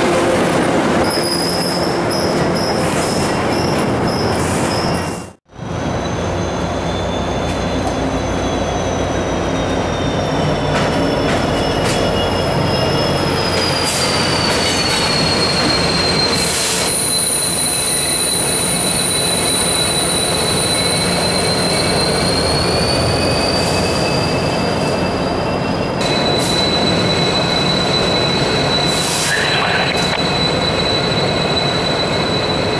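Passenger coaches rolling past a platform. Then a CSX SD70MAC diesel locomotive moving slowly through the yard with wheels squealing on the rails: long, high, steady squeal tones that drift slowly in pitch over the low running of the locomotive.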